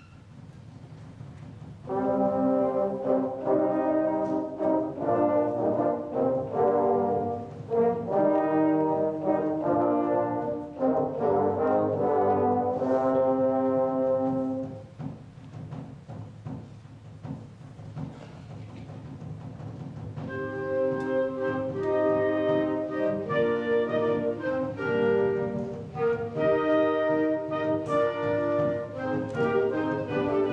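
Concert wind band of brass and woodwinds playing a lively piece: the full band comes in about two seconds in, drops to a softer passage around the middle, and builds back up near the end.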